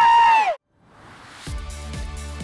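A held, high-pitched cheering whoop that bends down and cuts off about half a second in. After a second of near silence, outro music with a steady beat and deep bass starts about a second and a half in.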